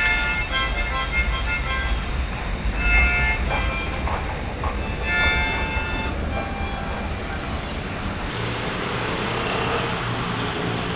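Music playing, then from about eight seconds in the noise of a BTS Skytrain train pulling into the station rises sharply, with a steady low hum under it.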